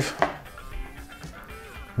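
Soft background music, with a single short knock near the start as a hard disk drive is set down on a desk.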